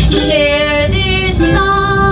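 A woman singing a simple tune in long held notes, accompanying herself on a ukulele.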